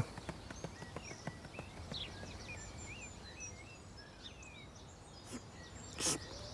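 Faint garden birdsong ambience: scattered short chirps and twitters, with a few soft ticks.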